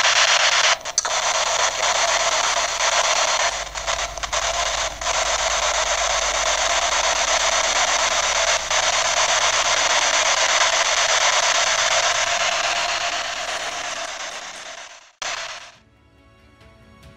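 Spirit box sweeping through radio stations, giving a steady hiss of static with a few brief dropouts. The hiss fades in the last few seconds and cuts off near the end.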